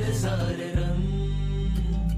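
Background music with a chanted vocal line over a steady bass, the bass dropping out briefly about half a second in.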